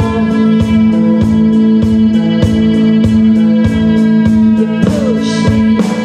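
Live rock band playing amplified music: one chord held steady over regular drum hits about three a second, with a cymbal wash about five seconds in.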